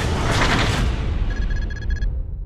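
Logo-reveal sound effect: a loud low rumble under a noisy rushing wash, joined over the second half by a rapid run of short high electronic beeps, about seven a second.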